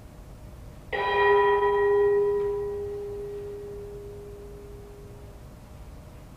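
A bell struck once about a second in, ringing with several overtones and slowly fading over about four seconds.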